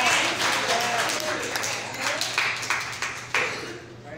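A small congregation clapping in response to the preacher, irregular claps from several people with a few voices calling out, dying away near the end.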